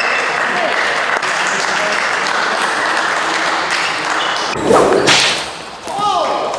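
A steady hiss, then about five seconds in a rising swoosh and a loud whip crack: a whip-crack sound effect laid over the Captain's forehand, which the commentary calls his 'whip'.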